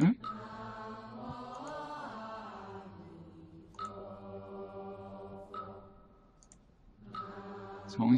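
Slow, drawn-out chanting by a voice or voices, with long held notes that drift slowly in pitch and fade briefly about six seconds in. A few faint mouse clicks are heard along with it.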